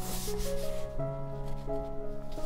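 Fountain pen nib scratching across journal paper while writing, with the strongest stroke in the first half second and lighter strokes after, over soft piano music.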